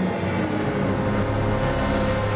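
Dramatic TV background score of held notes, joined about a second in by a low steady rumble.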